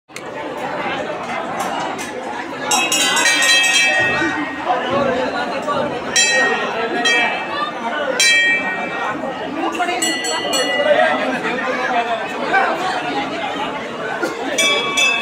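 Crowd chattering in a temple hall, with a metal temple bell rung in several bursts of quick repeated strikes.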